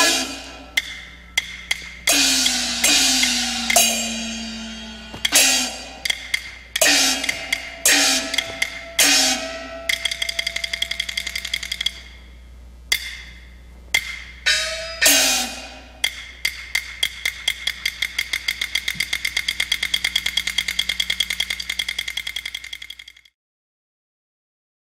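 Traditional Chinese opera percussion: separate strokes of gongs and cymbals with sharp clapper clicks, some gong tones bending in pitch after the stroke. In the last third, a run of strokes speeds up with a steady metallic ringing, then stops suddenly just before the end.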